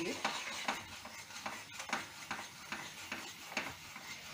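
A plastic spatula stirring milk and sugar in a nonstick pan, with repeated irregular strokes and scrapes against the pan over a steady sizzling hiss of the mixture heating as the sugar melts.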